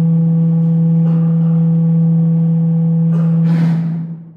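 Loud, steady low hum from the microphone and sound system, one pitch with a few faint overtones, with a couple of brief noises near the end.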